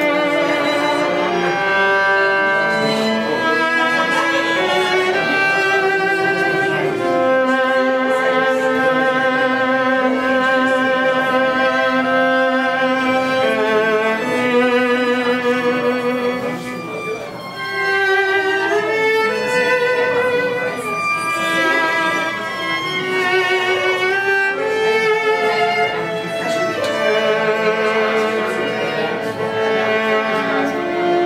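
Solo viola, bowed, playing a melody of long held notes, each with a clear vibrato wavering in pitch. It is a demonstration of vibrato.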